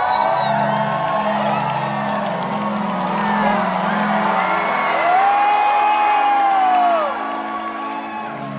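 Live band's song intro: low sustained keyboard chords pulsing steadily, with audience members whooping and cheering over it, one long drawn-out whoop about five seconds in.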